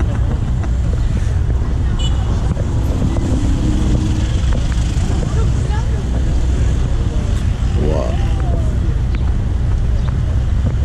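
Steady low rumble of a vehicle driving slowly, engine and road noise with some wind on the microphone. A laugh near the start and brief faint voices later.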